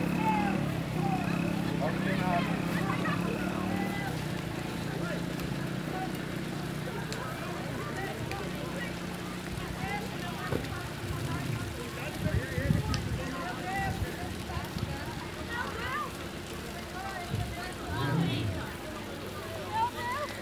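Distant voices talking, over a steady low engine hum that is strongest in the first four seconds and then fades. A few brief low thumps, wind or handling on the microphone, come in the second half.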